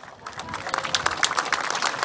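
Crowd applauding, building from scattered claps into steady applause within the first second.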